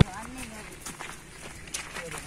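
Footsteps of several people walking over dry ground, with a few soft steps and faint voices talking nearby.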